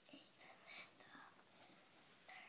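Faint whispering from a young child, quietly murmuring to himself.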